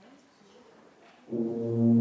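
A tuba and euphonium ensemble comes in together on a loud, held chord about a second and a quarter in, after a faint room murmur.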